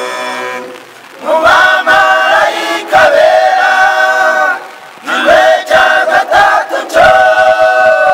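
Choir singing a cappella in harmony: held chords in phrases, with short breaks about a second in and about five seconds in.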